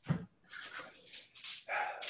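A small cloth bag being handled: a dull knock just after the start, then repeated short rustles of fabric.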